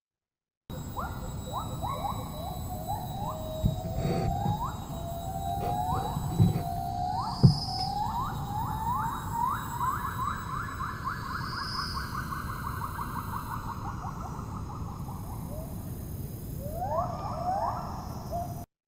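Field recording of a Müller's gibbon pair, male and female singing together: a series of rising whoop notes that quickens into a fast run of short notes, then slows and fades, with a few more rising notes near the end. A faint knock sounds about seven seconds in.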